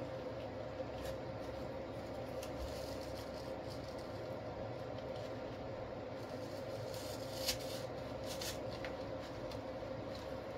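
Soft rustling and small clicks of artificial flower stems being handled and pushed into an arrangement, over a steady low hum. One sharper click comes about seven and a half seconds in.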